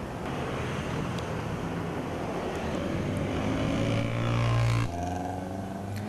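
Street traffic with cars and motorcycles passing. One engine climbs in pitch and grows louder as it passes, then the sound cuts off suddenly about five seconds in, and steadier engine noise follows.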